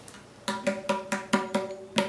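Freshly reheaded tabla dayan struck with the fingers, about eight quick strokes starting about half a second in, each ringing with a clear pitch. The new head is being played to check its tuning after being pulled up to tension, and is sounding better.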